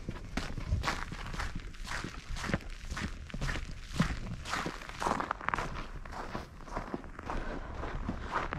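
Footsteps on packed snow at a walking pace, about two steps a second.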